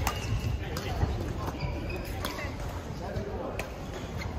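Badminton hall ambience: a few sharp racket-on-shuttlecock hits about a second apart from play on nearby courts, short high squeaks of court shoes, and a murmur of voices over a low, reverberant hall rumble.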